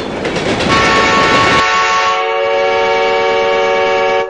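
Animated-ident train sound effect: a rushing rumble of an approaching train, then one long, steady train horn blast. The horn comes in under a second in and holds on after the rumble drops away about halfway through.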